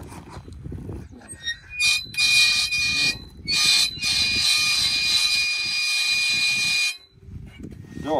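Flagpole pulley squealing as its halyard is hauled to lower the flag: a high, steady squeal in several pulls, the last about three seconds long, cutting off suddenly about seven seconds in.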